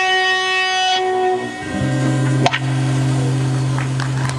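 A band's final chord, with electric guitar prominent, rings out and fades about a second in. A little under two seconds in a low steady tone starts and holds, with a sharp click about midway.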